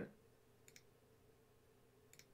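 Near silence with a faint double click about 0.7 s in, typical of a computer mouse being clicked to place a drawing tool on a chart.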